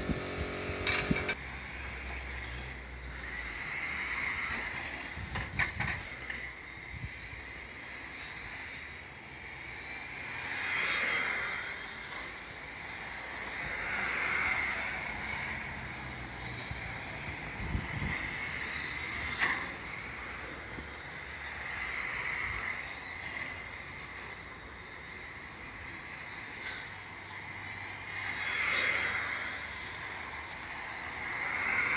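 Electric 1:10 scale RC touring car running laps. Its motor whines, rising sharply in pitch again and again as it accelerates, and the sound swells each time the car passes close by.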